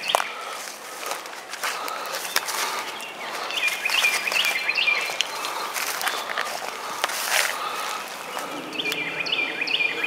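A songbird singing a short phrase of chirps twice, several seconds apart, over outdoor ambience, with footsteps and handling clicks from a handheld camcorder being walked along.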